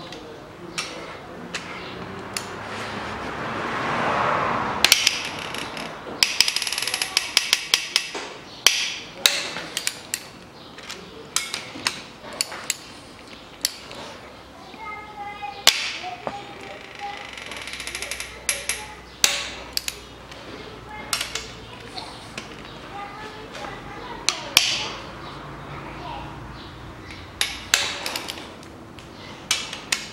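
Metal clicks, taps and clinks of a socket wrench and extension working the cylinder head bolts of an aluminium Toyota Caldina 2.0 engine as they are turned the final 90 degrees, with a few short metallic rings in between.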